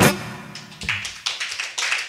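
The last strummed chord of an acoustic guitar rings out and fades. About a second in, a small audience starts clapping in applause.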